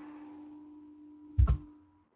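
Faint room hiss with a steady low hum, then a single short thump about one and a half seconds in, after which the sound cuts out to dead silence.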